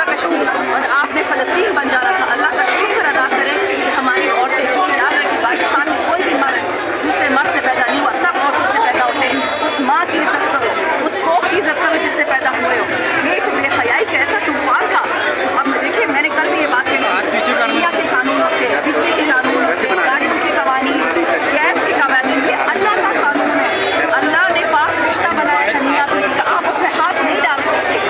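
A woman talking amid the chatter of a tightly packed crowd, with several voices overlapping throughout.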